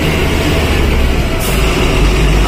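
A truck's engine and road noise heard from inside the cab while driving: a loud, steady low rumble.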